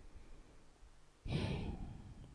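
A man's short audible breath into a close microphone, a little over a second in and lasting about half a second.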